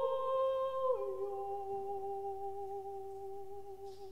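Mezzo-soprano singing unaccompanied: a held note, then about a second in a step down to a lower long note that slowly fades away.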